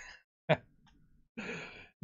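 A man's laughter trails off, then a short sharp catch of breath and a breathy sigh of about half a second near the end.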